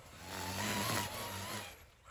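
Ryobi battery-powered string trimmer running, heard faintly as a steady motor whine over a low hum that fades out just before the end.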